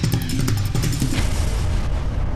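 Intro theme music with a steady beat, heavy bass and sharp percussive hits, playing under the show's logo reveal.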